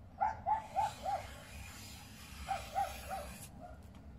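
An animal's short, high-pitched yips: four quick ones in the first second, then three more about two and a half seconds in.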